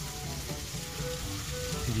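Water from a koi pond's submersible pump outlet splashing steadily into the pond, a continuous hiss.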